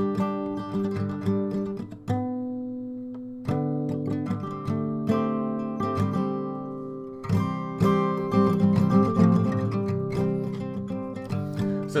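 Acoustic guitar capoed at the fifth fret, fingerpicked over a D chord shape with little fretting-hand flourishes. About two seconds in, one chord is left ringing for a second and a half before the picking starts again, and it gets busier and louder in the second half.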